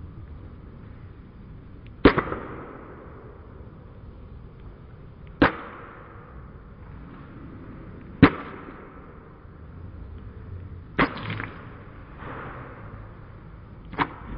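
Claw hammer striking an orange on a hard floor: four sharp blows about three seconds apart, each with a short ringing tail, the last followed quickly by a lighter second hit.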